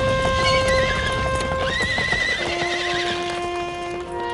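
A horse whinnying twice, a short call just after the start and a longer, wavering one from about two seconds in, over background music with long held notes.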